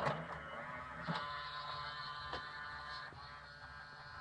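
A knock as the Numark CDX CD player is handled at its front loading slot, then the player's disc mechanism whirring steadily with a faint tonal whine and a couple of light clicks.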